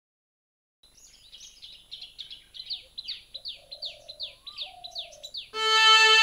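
Birds chirping: a run of quick, repeated downward-sweeping chirps, about three a second, with a few lower calls among them. Sustained music comes in just before the end.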